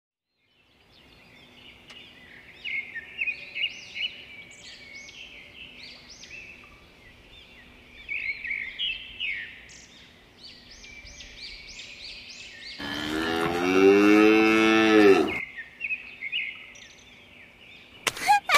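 Birds chirping in quick, repeated calls, with a cow mooing once, loud and long, about thirteen seconds in; the chirping carries on after it.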